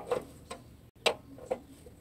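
Ring spanner being worked on the top mounting nut of a motorcycle rear shock absorber: sharp metal-on-metal clicks about every half second, the loudest about a second in.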